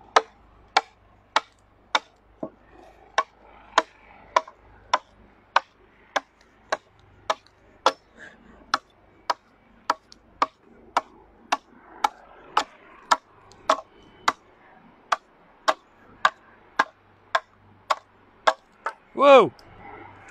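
A hand axe hewing a wooden bow stave: sharp, evenly paced strokes, a little under two a second. The strokes stop near the end, and a man gives a brief loud cry as the axe slips from his hand.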